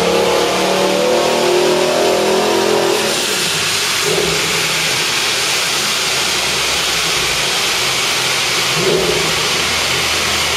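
Jeep Grand Cherokee SRT8's Hemi V8 pulling hard on a chassis dynamometer, its note rising in pitch until about three seconds in. Then the throttle closes and a steady whirring noise of spinning rollers and tyres takes over, with a short engine swell twice.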